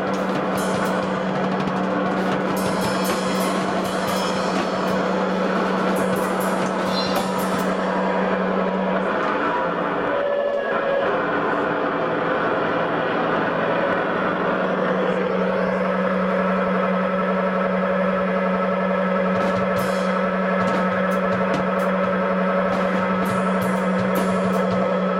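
Loud live band music: a drum kit playing under a steady low droning tone and a dense distorted wash. The low drone drops out for several seconds in the middle, then returns.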